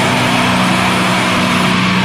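Black metal music: heavily distorted guitars holding a steady, droning low chord with no drum hits.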